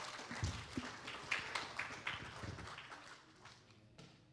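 Congregation applauding: a patter of many hands clapping that thins out and dies away toward the end, with a couple of low thumps mixed in.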